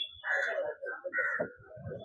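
Indistinct off-microphone voices and scattered knocks at a podium's press microphones as people shift around them.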